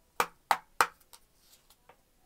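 Three quick, sharp taps about a third of a second apart, followed by a few faint ticks: an oracle card deck being handled and knocked against a wooden desk.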